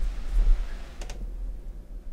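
Light clicks of a laptop keyboard, the sharpest about a second in, over a low steady room rumble.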